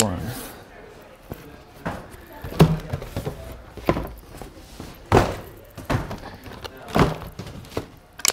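Cardboard sneaker boxes and shoes being handled and set down on a stone counter: a run of irregular thunks and knocks, about seven of them, with voices in the background.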